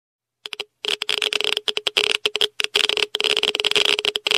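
Radiation dosimeter crackling and buzzing at a high count rate: rapid, irregular clicks that crowd into chattering runs with a shrill tone, starting about half a second in.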